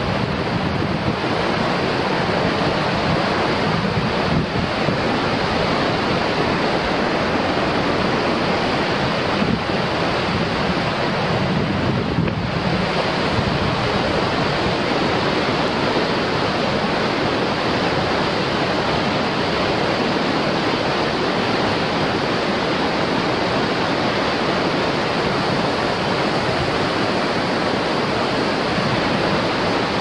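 Fast glacier-fed creek rushing over rocks as loud, steady whitewater.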